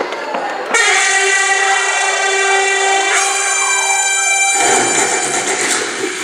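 Train horn sound effect from the performance's soundtrack: one long steady horn blast starts abruptly about a second in and holds for nearly four seconds. Near the end it gives way to the rumble and clatter of a running train.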